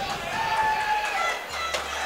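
Spectator crowd chatter, with one voice held above it for about a second near the start.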